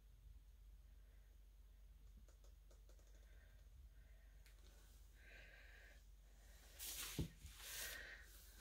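Near silence: room tone with a steady low hum, broken about seven seconds in by a brief soft noise and a click.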